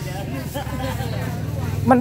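A motor vehicle's engine running steadily, a low even hum, with faint voices in the background.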